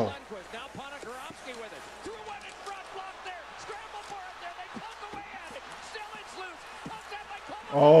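Ice hockey TV broadcast playing at low volume: a commentator's play-by-play over arena crowd noise during an overtime scramble in front of the net. A louder man's voice cuts in near the end.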